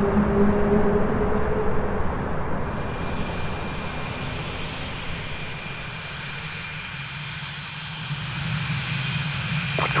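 Jet engine noise. A low rumble fades over the first couple of seconds. Then the thin, steady high whine of a Swiss F/A-18C Hornet's twin F404 turbofans at taxi power comes in, growing louder near the end as the jet rolls past.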